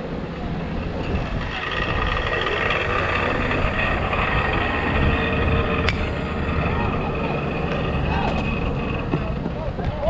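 Wind rumble on the microphone under spectators' and players' voices at a baseball game. About six seconds in comes a single sharp crack as the bat meets the ball, followed by shouts rising near the end as the batter runs.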